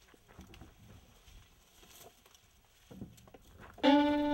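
Faint scattered rustles and clicks, then near the end a violin begins a long held note as background music starts.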